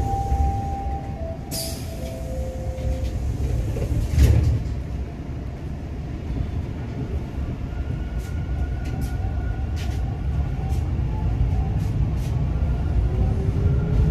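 Toronto subway train (Line 2, Bombardier T1 car) running, heard from inside the car: a steady low rumble with a few held whining tones in the first seconds. A loud clunk comes about four seconds in, light clicks follow later, and a whine rises near the end.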